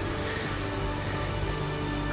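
Soft background music score of sustained held notes over a steady outdoor hiss.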